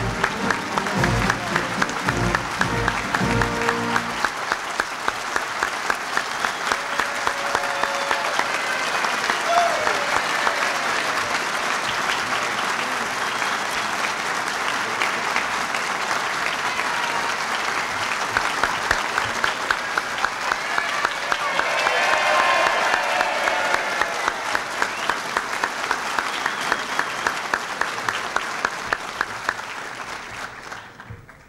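A large audience applauds at length, with music under the clapping for the first four seconds. Voices call out over it now and then, and the applause dies away at the very end.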